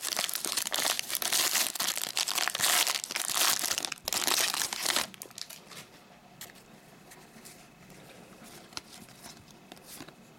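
A foil trading-card pack wrapper is torn open and crinkled by hand for about five seconds. Then come quieter, scattered small clicks and rustles as the stack of cards is slid out and handled.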